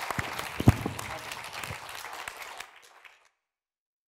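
Audience applauding, with one loud microphone bump about a second in. The clapping thins out after about two and a half seconds, then the sound cuts off to dead silence.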